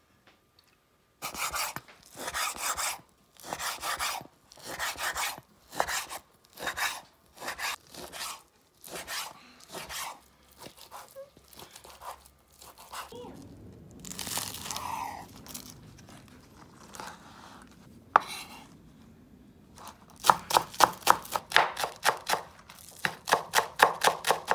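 Chef's knife cutting raw bacon on a wooden cutting board, with strokes roughly every two-thirds of a second. Near the end it changes to rapid chopping of green onions on the board, about five knife strikes a second.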